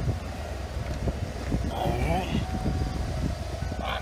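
1988 Ford F-150 engine idling steadily, exhausting through shorty headers into a single muffler.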